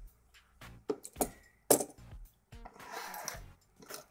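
Steel lock picks clinking as they are handled and set down: a few sharp metallic clicks, the loudest a little under two seconds in, then a brief rustle of sliding around three seconds in.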